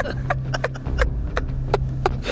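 A man laughing in short, breathy pulses, a few to the second and unevenly spaced, over a steady low hum.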